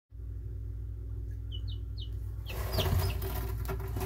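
Young Cinnamon Queen chicks peeping: short high peeps begin about a second and a half in and come more often toward the end. About halfway through, rustling and handling noise joins them in the wood shavings. A steady low hum runs underneath.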